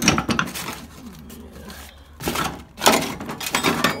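Metal hand tools clanking and clinking against each other as they are shuffled around in a steel tool box drawer, in several bursts: one at the start and two more in the second half.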